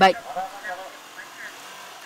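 Outdoor street ambience at a busy market entrance: a few people talking quietly in the background and a motorbike engine running.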